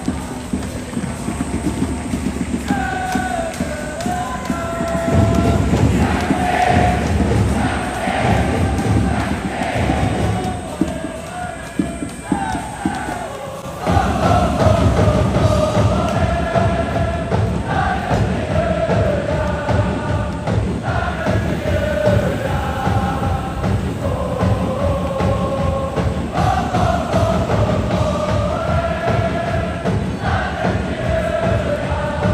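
A large crowd of football supporters singing a chant in unison over a steady beat. The chant fades about halfway through, and a new chant starts suddenly at full volume soon after.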